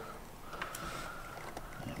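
Quiet handling sounds of a darning needle being forced through the middle of a braided rope end with a sailmaker's palm, with one small click a little under a second in, over a faint steady high hum.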